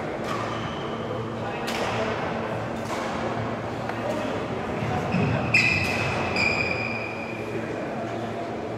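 Sports-hall ambience of a badminton hall: a murmur of background voices, scattered sharp clicks and thuds, and high shoe squeaks on the court floor, loudest from about five and a half to seven seconds in.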